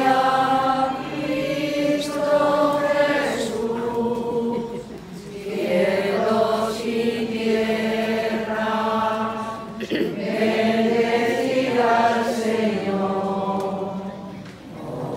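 A crowd of many voices singing a religious hymn together in unison, in slow phrases of long-held notes with short breaks every couple of seconds.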